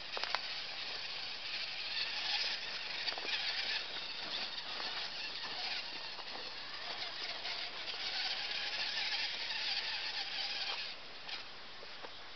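Radio-controlled Redcat rock crawler's motor and drivetrain whining steadily as it crawls along a dirt trail, with scattered small clicks and knocks from its wheels. The whine stops about a second before the end.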